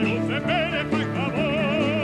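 Male cantor singing solo with a wide vibrato: a few quick ornamented turns in the first second, then a long held note, over steady sustained chords of accompaniment.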